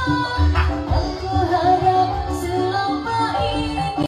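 A woman singing a dangdut song into a handheld microphone over backing music with a steady repeating bass beat, her voice holding and bending long notes.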